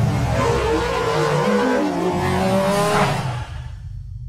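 Channel intro sound effects: a low rumble with sliding, gliding tones and a whoosh that swells about three seconds in, then fades out.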